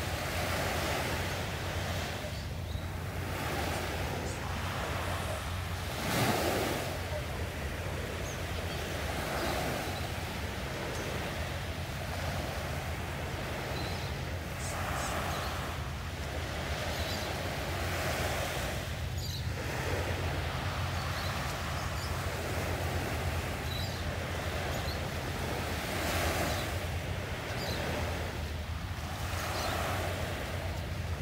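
Small sea waves washing on the shore, a steady wash that swells and eases every few seconds, with a louder surge about six seconds in. Wind rumbles on the microphone underneath.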